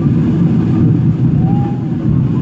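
Steady low rumble of an airliner's jet engines and rushing airflow, heard inside the cabin as the plane climbs through cloud after take-off.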